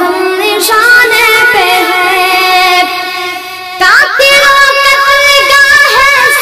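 A boy singing a naat, an Urdu devotional song, in long held notes with ornamented turns. The voice drops away briefly a little past halfway, then comes back with a rising slide into a new held note.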